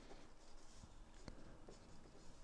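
Pen writing on paper: faint scratching strokes with a few light ticks as words are handwritten.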